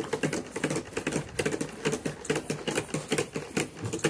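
Calves drinking milk from a feeder, a quick rhythmic run of sucking and slurping sounds.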